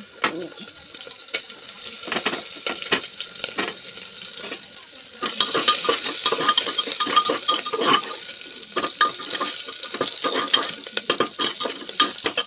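Chopped onion, chillies, peanuts and potato sizzling in hot mustard oil in a pressure cooker, stirred with a metal ladle that clicks and scrapes against the pot. The sizzling gets louder about five seconds in.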